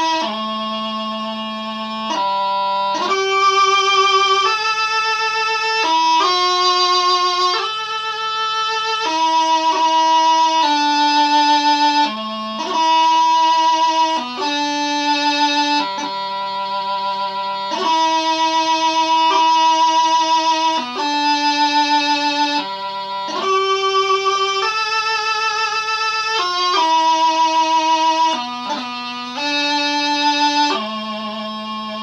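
Highland bagpipe practice chanter playing a slow piobaireachd melody without drones: held notes, each change marked by quick grace-note flicks.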